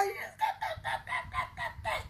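A woman's voice making a quick run of about eight short, breathy vocal sounds, about four a second, that fade away: mocking noises.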